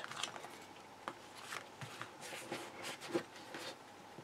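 A cardstock card being folded shut and pressed flat by hand: faint paper rustling with a few soft taps.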